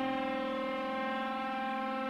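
Electronic music: a single held synthesizer note, one steady pitch with many overtones, with no beat underneath it.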